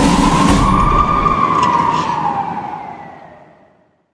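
A single siren wail that rises and then falls in pitch and fades away. Music underneath it, with a low beat, stops about a second and a half in.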